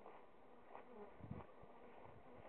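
Faint buzzing of honeybees flying about outside their hives, with a soft low bump a little past a second in.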